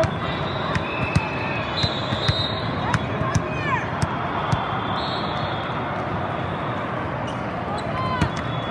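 Busy indoor volleyball hall ambience: a steady noise of many voices, with scattered sharp smacks of volleyballs being hit and short sneaker squeaks on the court floor.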